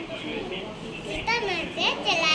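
A small child's high-pitched voice making short rising-and-falling vocal sounds in the second half, over a low murmur of other voices.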